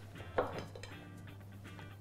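A single clink of a plate being set down on a stone counter as a cake is turned out of a silicone mould, over soft background music.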